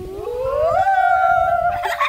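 A young woman's voice singing a long 'la', gliding up in pitch over about a second and holding the high note before it breaks off near the end.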